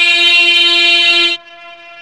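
A man's voice holding the long drawn-out 'boi' of a 'yeah boi' shout, one unbroken note at a steady pitch. About a second and a half in it drops abruptly to a much lower level and carries on, now played back from a computer monitor's speaker.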